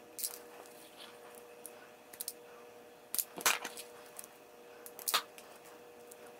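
Self-adjusting wire strippers cutting and stripping insulated wire ends: several separate sharp clicks and snaps of the jaws and handles, the loudest about three and a half and five seconds in. A faint steady hum runs underneath.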